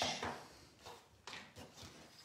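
A few short, soft rustles and taps of hands handling cardstock on a paper-covered craft desk.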